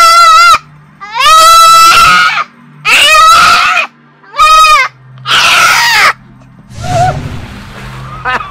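Five loud, high-pitched drawn-out cries, one after another, each half a second to a second and a half long, some wavering in pitch.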